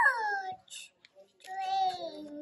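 A young child saying "train" in a drawn-out, sing-song voice, falling in pitch, then a second long held call about a second and a half in that drops at its end.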